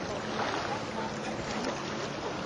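A steady rushing noise with no distinct events, with faint snatches of voices in the background.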